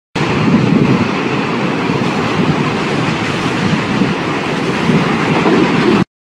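Intro sound effect: a loud, steady rushing noise with an uneven low pulsing, like a passing train, that cuts off suddenly at the end.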